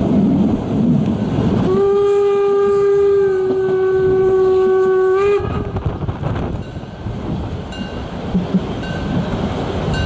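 Steam whistle of an SDG 2-10-2 narrow-gauge steam locomotive: one long steady blast of about three and a half seconds, starting a couple of seconds in and rising slightly in pitch just as it cuts off. Wind noise on the microphone runs underneath.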